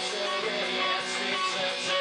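A live band playing an instrumental passage led by electric guitars.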